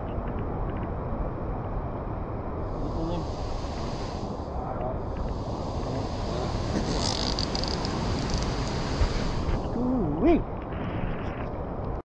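Wind rumbling on the microphone over ocean surf, with a hissing wash of surf that swells twice in the middle.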